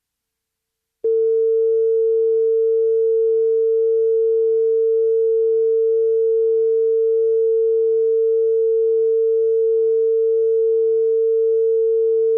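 Broadcast line-up test tone played with colour bars: one loud, steady mid-pitched tone that switches on abruptly about a second in and holds without change.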